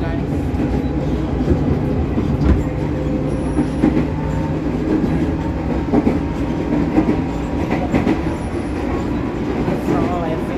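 Electric commuter train running along the track, heard from inside the carriage: a steady rumble and hum, with short knocks from the wheels every second or so.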